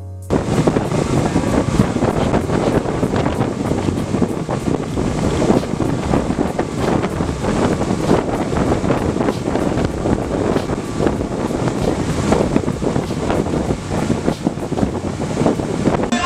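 Heavy wind buffeting the microphone on a fast-running motorboat, with the rush of the Honda 225 outboard and its wake underneath. It cuts in suddenly just after the start and stays steady and loud.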